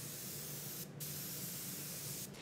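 Compressed-air gravity-feed spray gun spraying paint in a steady hiss, with a brief break a little before halfway when the trigger is let off.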